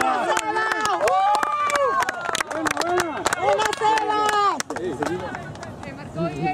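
Sideline spectators shouting and cheering, with scattered sharp handclaps, in reaction to a shot on goal; the noise dies down a little near the end.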